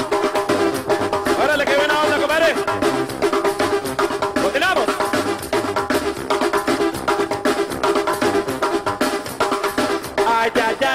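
Live duranguense band music: a drum kit keeps a steady beat under held keyboard chords. A couple of sliding vocal shouts come in the first half.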